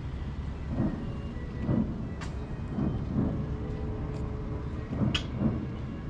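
Distant fireworks booming across open water: a series of dull low booms about a second apart over a steady low rumble, with a couple of sharper cracks.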